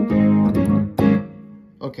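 Yamaha CK61 stage keyboard playing a layered Analog Lead 4 and DX Crisp patch: three notes or chords struck about half a second apart, ringing and then dying away.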